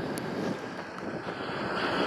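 Steady outdoor background noise of traffic going by, with no distinct events.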